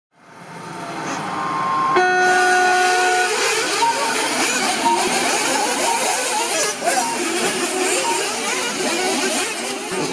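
Several 1/8-scale nitro RC buggy engines buzzing and revving together as the cars race, fading in at the start. A steady beep is held for about a second near the two-second mark, and short beeps come roughly once a second over the engines.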